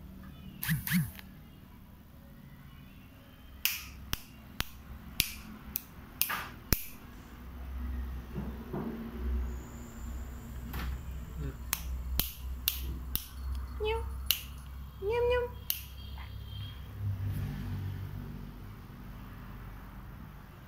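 A person snapping their fingers: sharp single clicks, about a dozen, in two clusters, one a few seconds in and the other just past halfway. A couple of short rising calls come near three-quarters of the way through.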